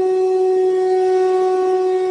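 A single loud horn-like tone held at one steady pitch, with a few overtones above it.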